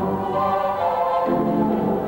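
Mighty Wurlitzer theatre pipe organ playing slow, held chords. A little past halfway the harmony moves to a new chord with fuller low notes.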